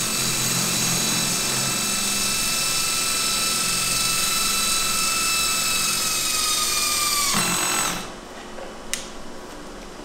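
High-speed surgical drill boring a burr hole into a model skull. It gives a steady high whine with overtones that sags slightly in pitch and then cuts out about seven seconds in. The drill has a clutch that stops the bit automatically once it is through the bone.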